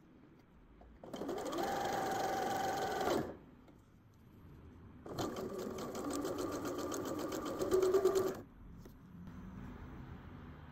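Electric sewing machine stitching fabric piping around a cord. It runs in two spells: about two seconds, a pause of about two seconds, then about three seconds more.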